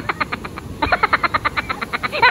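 Smartphone camera shutter firing in burst mode: a rapid, even run of clicks, about ten a second, with a short break about half a second in before it carries on.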